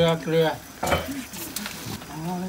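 A few spoken words, then crackling and rustling of aluminium foil and leaves as ingredients are handled and laid onto the foil, in short bursts about a second in and again past the middle.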